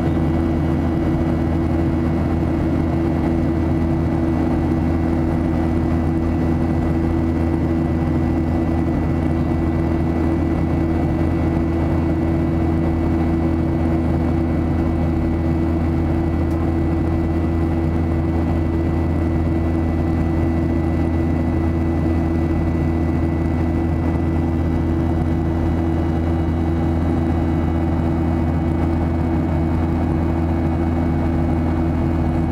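Steady cabin drone of a Boeing 737-700 in flight, from its CFM56 turbofan engines and the airflow past the fuselage. It has a deep hum and a thin, constant high whine, unchanging throughout.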